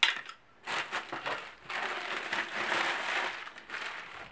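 Plastic courier mailer bag being crumpled and handled in the hands, a continuous crinkling with a short click at the very start.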